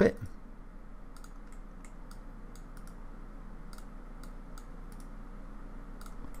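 Faint, irregular computer mouse clicks, a dozen or more short ticks, as objects are selected and grouped in a 3D modelling program, over a steady low hum.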